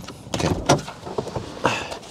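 A Volkswagen e-Up's door being opened, with a short sharp sound near the end.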